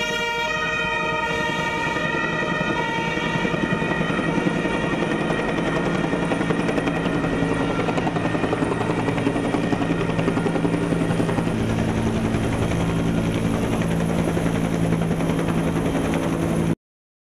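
A police siren's steady tones fade in the first couple of seconds, giving way to a low-flying helicopter's fast rotor chop and engine drone, which grows stronger over the rest.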